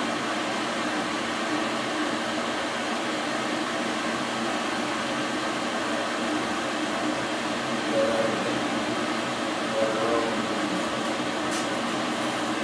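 Steady whirring room hum, like a fan or air conditioner running, with two brief faint sounds over it later on.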